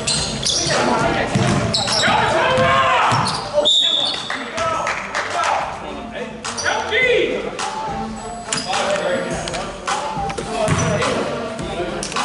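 Basketball game sounds on a gym floor: players' voices, a ball bouncing on the hardwood, and a short, high referee's whistle blast about four seconds in.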